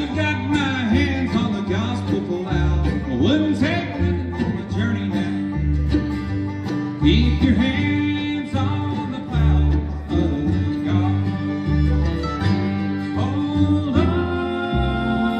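Bluegrass band playing an instrumental break, with the fiddle carrying a sliding melody over banjo, mandolin, acoustic guitar and a steadily pulsing upright bass.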